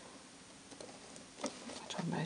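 Faint handling of a cardstock box and paper band: a few soft ticks and a brief rustle about a second and a half in, over quiet room tone.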